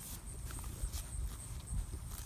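Goat grazing close by, biting and tearing off clover and grass in a few soft, sharp crunches, over a low rumble.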